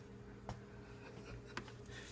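Quiet room with a faint steady hum, a sharp click about half a second in and a smaller click near the end, over light scratchy rubbing.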